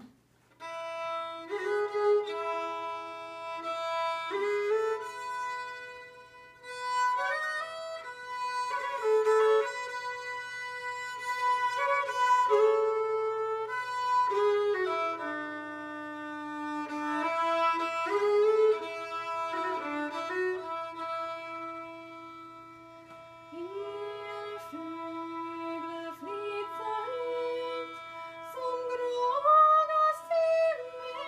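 Solo fiddle playing the instrumental introduction to a Norwegian folk song (stev), a bowed melody moving over a sustained lower note, in phrases with short breaks between them.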